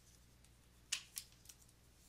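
Three light, sharp clicks about a second in, the first the loudest and the next two softer and quicker, over faint room hiss.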